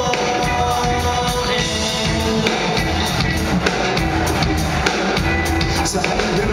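Live band music played loud through a concert PA, with a drum kit keeping a steady beat under sustained keyboard and instrumental lines, with no lead vocal line.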